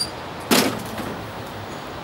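A single sharp knock about half a second in, with a brief ringing tail, as the Greenworks 80V DigiPro snow thrower is tipped back on its wheels by its handlebar.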